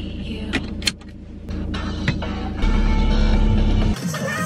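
Car cabin with the engine running as a steady low rumble, and a few sharp clicks in the first half as the seatbelt is drawn across and buckled. About two-thirds in the rumble gets louder and stays until it cuts off at the end.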